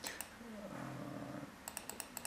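Computer keys being pressed to flip through presentation slides: two clicks at the start, then a quick run of about five clicks near the end. In between there is a low murmured hum.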